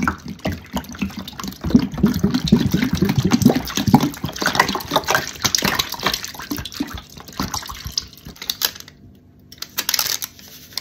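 Liquid detergent glugging out of two upturned plastic bottles and splashing into a tub of soapy liquid over car wash sponges, loudest in the first few seconds and dying away near the end as the bottles run empty. A short plastic rustle comes at the very end.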